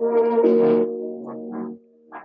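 Electronic music track played through a G5 iMac's built-in speakers, starting suddenly with loud sustained synth chords, then dropping in level about a second in and fading out near the end.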